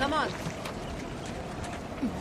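A voice urging "come on" once at the start, then steady background noise with no clear events.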